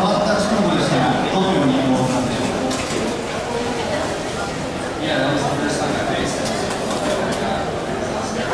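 A voice speaking over a ballpark's public-address system, echoing across the stands.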